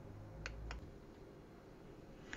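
Two faint, short clicks a quarter second apart, about half a second in, over quiet room tone.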